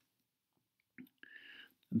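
About a second of silence, then a small mouth click and a short, quiet breath in from the speaker.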